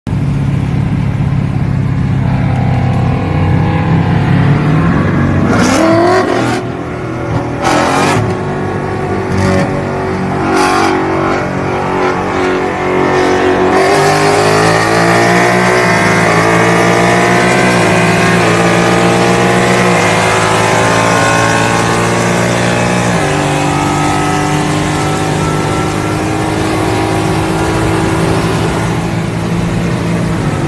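A 2018 Mustang GT's 5.0 L Coyote V8, heard from inside the cabin, accelerating hard through its 10-speed automatic. The engine pitch climbs and then drops back at each upshift, with clear gear changes midway and again later.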